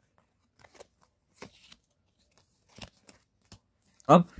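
Faint light taps and rustles of Uno Flip playing cards being handled and laid down on carpet, a few scattered through the stretch.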